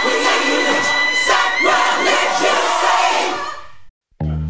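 Song with many voices singing together over dense backing, fading out near the end.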